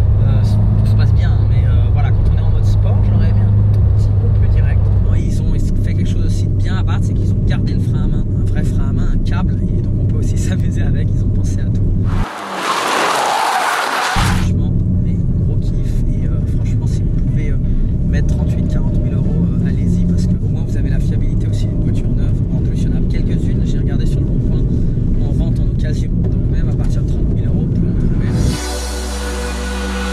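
Abarth 124 GT's turbocharged 1.4-litre four-cylinder engine running steadily under way, with a loud hiss lasting about two seconds near the middle.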